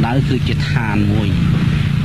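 A Buddhist monk preaching in Khmer, a man's voice speaking continuously over a steady low hum.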